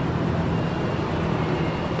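Steady road traffic noise with a low, even hum.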